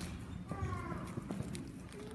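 Scattered footsteps and light knocks of children walking off the front of a church sanctuary, with a brief voice about half a second in.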